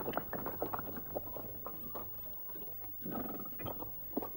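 Scattered, irregular hard knocks and clinks on rocky ground, with a short scraping rush about three seconds in.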